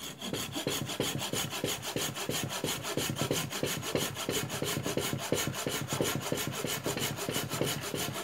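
Folding pruning saw cutting through a thin, freshly cut willow branch, with rapid, even back-and-forth strokes, several a second, that keep up steadily.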